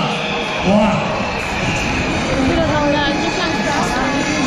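Mostly speech: voices talking over steady background noise.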